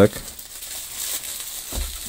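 Bubble wrap and plastic packaging crinkling as they are handled, with a short low bump near the end.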